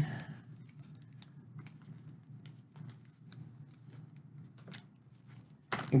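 Faint, scattered rustles and small clicks of comic books and their packaging being handled.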